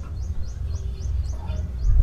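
A high-pitched chirp repeating evenly, about four short chirps a second, each dropping slightly in pitch, over a steady low hum.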